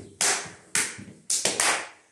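Hand slaps on the thighs and shins in a Hungarian Roma men's dance slapping figure: about five sharp slaps, the last three bunched closely together.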